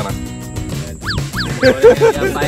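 Background music with a comedy sound effect: three quick squeaky tones, each sliding down in pitch, about a second in.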